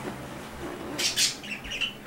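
Cockatiel calling: a couple of shrill calls about a second in, followed by a few short chirps.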